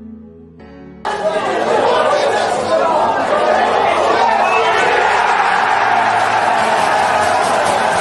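Football crowd cheering a goal, a sudden loud roar of many voices breaking out about a second in and holding steady, over quiet background music.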